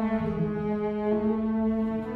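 Cello played with the bow, drawing long held notes that move to a new pitch about a third of a second in and again about a second in.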